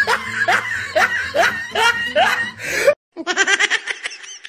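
Laughter: a quick, even run of rising laughs that cuts off abruptly about three seconds in. After a short gap, a second, thinner-sounding stretch of laughing begins.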